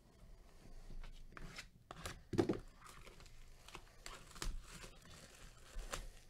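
Plastic shrink wrap being torn and crinkled off a sealed trading-card hobby box by a gloved hand: irregular crackling and tearing, loudest about two and a half seconds in.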